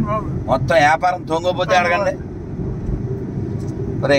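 Steady low rumble of a car on the move, heard from inside the cabin: engine and road noise. A voice talks over it for about the first two seconds, then the rumble goes on alone.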